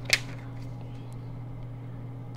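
A single sharp crackle of paper about a tenth of a second in as a folded instruction booklet is opened out, followed by quiet with a steady low hum underneath.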